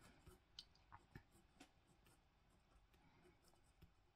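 Near silence with a handful of faint ticks from a fine-tip fineliner pen making quick short strokes on cold-press watercolour paper, mostly in the first two seconds and once near the end.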